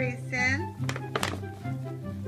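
Two sharp thunks close together about a second in, a cat knocking about in a paper gift bag, over steady background music. A short pitched vocal call comes just before them.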